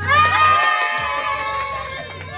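Several young women shrieking and laughing at once in excitement: a sudden burst of high-pitched squeals, loudest at the start and trailing off after a second or so.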